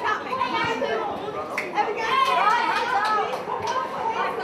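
Many children's voices chattering and calling out over one another, excited and high-pitched, with no clear words, and a few sharp clicks mixed in.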